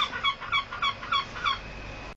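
A gull calling: a rapid run of about six short, evenly spaced calls, roughly three a second.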